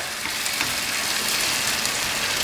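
Chopped tomatoes and onions frying in a pan over a high gas flame: a steady sizzling hiss.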